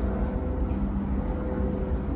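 Steady low rumble of a motor vehicle running nearby, with a faint engine hum over it.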